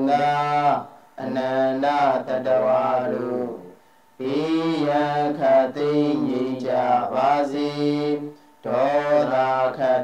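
A solo voice chanting Buddhist devotional verses in long, held phrases, breaking off briefly about a second in, at four seconds and near the end.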